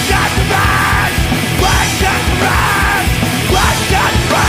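Loud, dense post-hardcore rock: distorted guitars, bass and pounding drums, with yelled vocals coming in phrases of about a second each.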